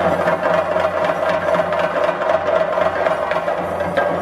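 Chenda drums beaten fast and continuously with sticks, a dense, steady roll of strokes with no break.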